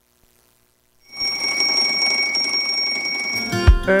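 About a second of silence, then an alarm clock ringing steadily, a bell-like ring with two high, unchanging tones. Near the end it gives way to the opening beats of a music jingle.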